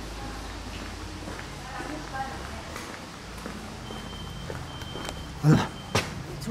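Faint footsteps on a concrete floor with distant voices, over a low steady rumble.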